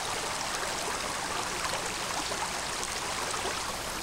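A creek running steadily, an even rush of flowing water.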